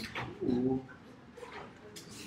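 An indistinct low voice, a short murmur about half a second in, over quiet room noise.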